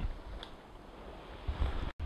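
Outdoor wind buffeting the microphone: a low rumble with a faint hiss that gusts louder about one and a half seconds in, then cuts off abruptly just before the end.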